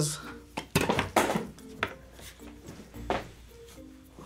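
Light background music with a few sharp knocks and clatters of kitchen items being handled on a countertop.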